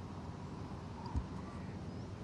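Quiet outdoor background hush with no strike of the ball, broken by one brief low thump a little after a second in.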